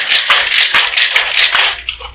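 Ice rattling inside a Boston cocktail shaker, a glass sealed onto a metal tin, shaken hard in a fast, even rhythm to chill the drink. The shaking stops just before the end.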